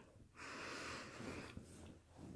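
A person's single faint breath, lasting about a second.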